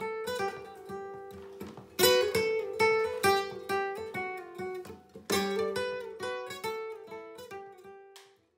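Nylon-string flamenco guitar playing a phrase of plucked notes that ring out and fade, with loud strummed chords about two seconds in and again past five seconds.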